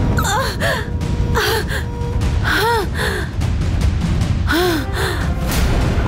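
A woman's voice making short wordless vocal outbursts, mostly in pairs, each rising then falling in pitch, over background music from the soundtrack.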